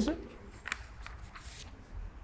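Loose sheets of paper handled and turned, a few brief soft rustles.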